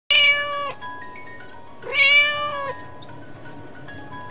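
A cat meowing twice, two long, even calls about a second and a half apart, the second rising at its start, over soft background music with held notes.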